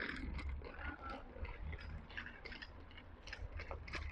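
Faint chewing and licking from a dog nibbling at a treat held in a person's hand, with a low rumble underneath.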